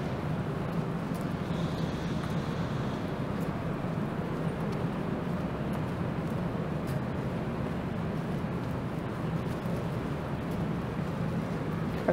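Steady road traffic noise from cars and a bus on a busy city street, with a faint high whine for a moment about two seconds in.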